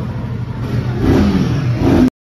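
Royal Enfield Himalayan 450's single-cylinder engine running and being revved, getting louder about a second in.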